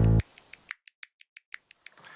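Background music cutting off abruptly a quarter second in, followed by a string of faint, separate clicks.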